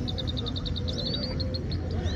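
Caged Himalayan (grey-headed) goldfinch singing: a fast run of short, high, evenly spaced notes, about ten a second, with a brief whistle about a second in. A steady low rumble of background noise runs underneath.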